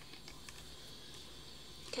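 Quiet room tone: a faint steady hiss with no distinct sound.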